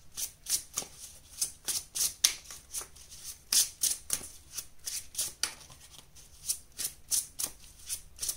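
A deck of tarot cards being shuffled by hand: a quick, irregular run of short card-on-card slaps and swishes, about three to four a second.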